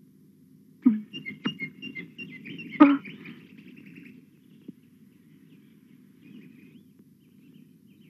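Birds chirping in a run of quick high notes for about three seconds, with a few sharp clicks among them, then fainter chirps later on, over a low steady background hum.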